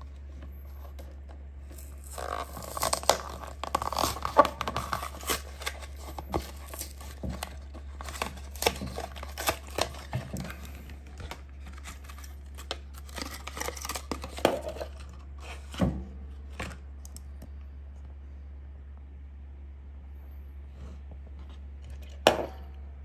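A die-cast toy car's blister pack being torn open by hand: the card backing tearing and the clear plastic blister crackling in many sharp, irregular crackles from about two seconds in. They thin out after about eleven seconds and stop a few seconds before the end, leaving a steady low hum.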